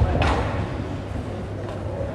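Room noise in a large sports hall: a steady low hum, with one brief noisy burst about a quarter of a second in.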